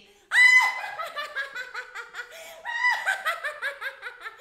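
A woman's shrill, loud witch's cackle: a long high cry about a third of a second in that breaks into rapid, falling laugh pulses, then a second cackle near three seconds in.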